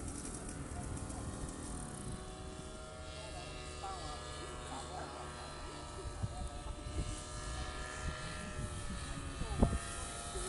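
Paramotor engine and propeller droning overhead, heard from the ground as a steady hum with a nearly constant pitch, the engine throttled back while the pilot descends.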